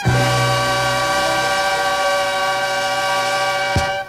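A band holding one long, steady closing chord, cut off by a single sharp hit just before the end, after which the music fades away.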